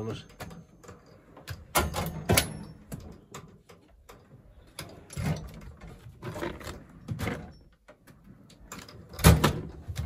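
Drawers of a steel Halfords mechanics tool chest sliding on their runners and shutting with a series of clunks, the loudest near the end.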